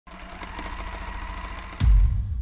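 Logo intro sting: a fast mechanical clicking and whirring rattle with a faint steady tone, then a deep boom about 1.8 s in as the logo lands.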